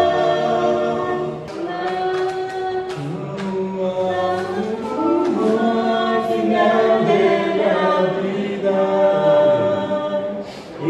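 Small group of men singing a Spanish-language hymn a cappella in harmony, holding long notes, with a short break between phrases about a second and a half in.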